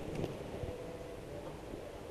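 A pause with no speech: faint, steady background hiss and hum of the studio.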